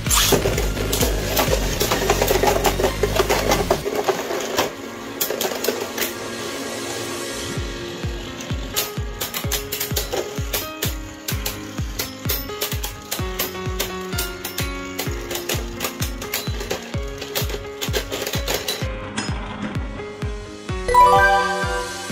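Background music with a steady beat over Beyblade spinning tops whirring and clashing in a plastic stadium, with many sharp clicks of the tops striking each other and the wall. A short rising jingle plays near the end.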